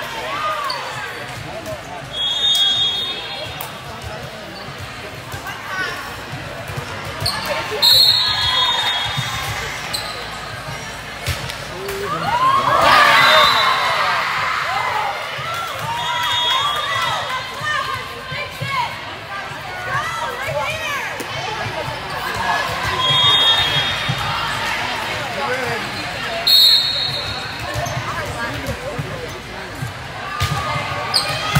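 Indoor volleyball game: athletic shoes squeak briefly on the court floor several times, with a few sharp ball smacks, over a constant murmur of spectators' voices. A louder burst of crowd cheering and shouting about 12 seconds in marks a point being won.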